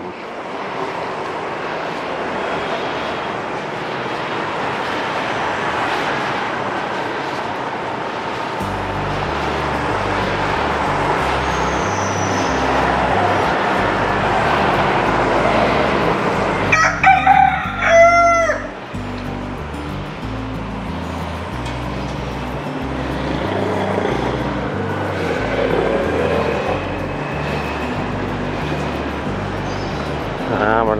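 A rooster crows once, about halfway through, in one call of roughly a second and a half that is the loudest sound here. Underneath runs a steady background noise, and background music with a low bass line comes in about a third of the way through.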